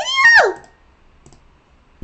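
A woman's voice making a short drawn-out vocal sound whose pitch rises and then slides down, followed by quiet with a couple of faint clicks about a second later.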